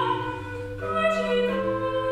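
A classical female singer singing a Baroque-style aria, holding long notes over an accompaniment with a bass line; the notes change about a second in.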